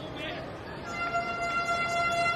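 Low stadium crowd murmur, then about a second in a steady held musical tone with several overtones comes in: the broadcast's replay-transition sting.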